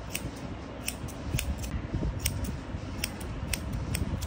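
Barber's hair-cutting scissors snipping hair, eight or so crisp snips at uneven spacing of about two a second, over a low steady background rumble.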